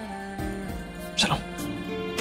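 TV serial background score of held chords, with a short, loud sweeping sound a little over a second in.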